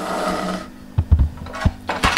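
A ceramic dinner plate slid across a cloth-covered table, then a few dull knocks as it is set down and shifted, starting about a second in.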